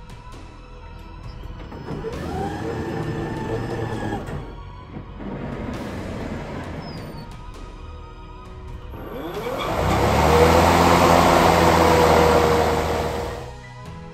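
Toro 60V battery lawn mower's electric motor spinning up and running briefly with a steady whine, then stopping. About nine seconds in it spins up again, louder, with the blade engaged: a whirring whoosh over the motor's hum that winds down near the end. Background music plays throughout.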